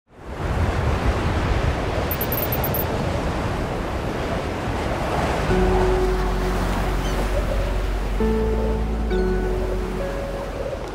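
Cinematic intro soundtrack: a steady rushing noise that fades in at the start, joined about halfway through by sustained music chords that change twice near the end.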